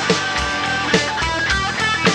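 Live rock band playing an instrumental passage without vocals: electric guitars, bass and keyboards over a steady drumbeat, with drum hits about twice a second.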